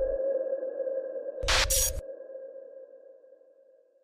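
Tail of an electronic logo sting: one held, ringing tone that slowly fades out, with a single loud hit about one and a half seconds in.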